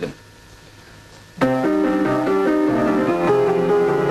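A short quiet pause, then about a second and a half in a grand piano begins playing, with held chords and a melody moving at an unhurried pace. It is the start of the piano accompaniment for a trial run-through of a song.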